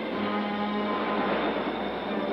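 A steady mechanical rumble and hiss with a low hum, a little louder around the middle.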